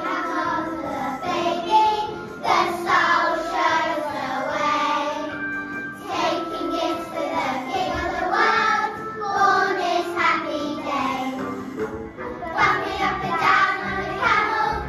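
A group of young children singing a song together over musical accompaniment, in phrases with short breaks between them.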